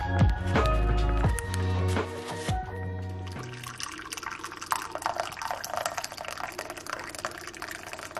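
Background music with a bass line, which stops about three and a half seconds in. Water is then poured into a ceramic teacup and gradually fills it.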